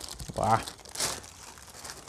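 Thin plastic bag crinkling as it is handled, with a short vocal sound from a man's voice about half a second in that is the loudest thing heard.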